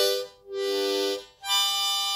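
Seydel diatonic blues harmonica in G played by a beginner: a slow run of separate held chords, each lasting well under a second, with short gaps between them, the last one starting about one and a half seconds in.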